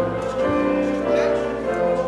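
A hymn played on a keyboard instrument, held chords changing a couple of times, with the congregation singing along.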